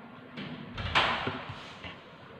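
A small plastic glue bottle set down on a tabletop: one knock about a second in, with softer handling noise around it.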